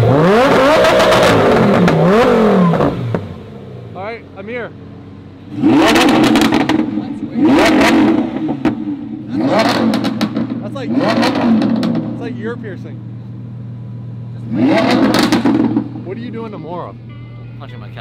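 Lamborghini Huracán V10 idling and being revved: one long rev that climbs and falls back at the start, then four or five short, sharp blips of the throttle about every one and a half to two seconds, with the idle steady in between.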